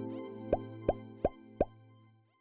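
Soft intro music fading out, with four quick pop sound effects about a third of a second apart, each a short blip that drops in pitch.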